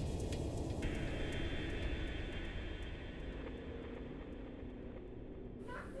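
Low steady rumble of room noise, with a faint hiss that comes in about a second in and cuts off sharply near the end.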